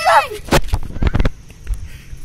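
Handheld phone being bumped and handled close to its microphone: a quick run of sharp knocks and deep thumps, about half a dozen in a second, then a few single knocks. A voice trails off at the very start.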